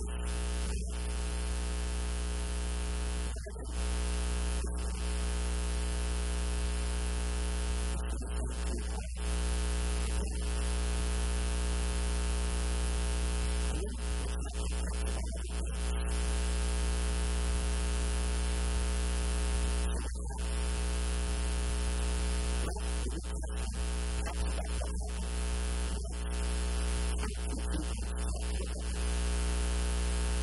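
Loud steady electrical mains hum and buzz with many overtones, dominating the recording's audio and briefly dropping out every few seconds.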